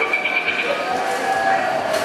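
Arcade din: electronic game-machine tones held steady underneath, with a short warbling beep in the first half-second, over a background of voices.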